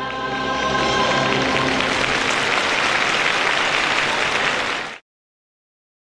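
A held musical chord fades out over the first second or so while audience applause builds and carries on steadily. All sound cuts off suddenly about five seconds in.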